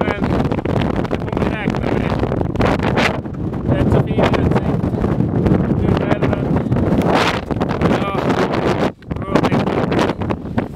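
Strong wind buffeting the camera microphone, a loud, continuous rumble, with a brief dip just before the end.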